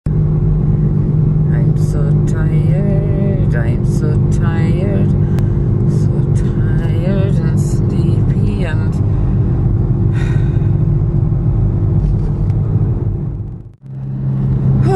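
Steady low drone of a car's engine and road noise heard inside the cabin, with a woman talking over it; the sound fades out just before the end.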